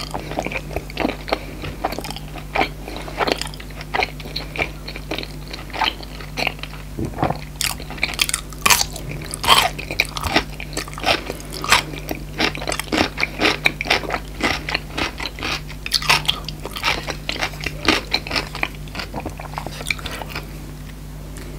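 Close-miked chewing and biting of crunchy food: many sharp, crisp crunches with wet mouth sounds, thickest around the middle, over a steady low hum.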